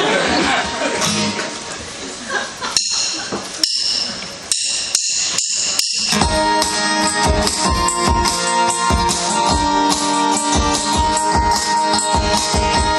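A live band starts a song: after a few seconds of crowd noise comes a short percussive lead-in of separate strokes, and about six seconds in the band comes in together, with strummed acoustic guitars, keyboard and a steady beat.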